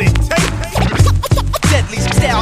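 Hip hop beat with a heavy bass line and turntable scratching: quick back-and-forth record scratches sweep up and down in pitch several times a second.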